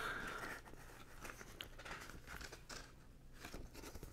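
Faint rustling and soft clicks of glossy paper as the pages of an LP-size booklet are handled and turned.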